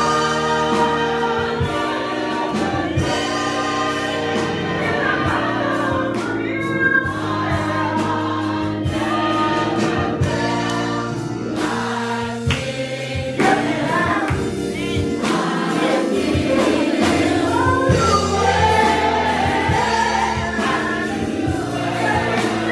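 Gospel choir singing in harmony, several voices at once, with instrumental accompaniment and a steady beat beneath.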